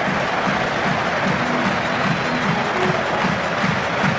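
Large stadium crowd cheering and applauding just after a try is scored, a steady dense wall of voices and clapping.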